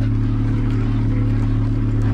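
Honda D16A6 four-cylinder engine idling steadily, a constant low hum with no rise or dip, running on a freshly replaced ignition control module.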